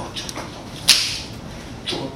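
Whip lashes in a self-flagellation scene: a sharp, loud crack about a second in, then a second, weaker crack near the end.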